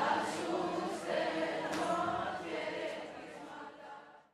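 Voices singing together, fading out near the end.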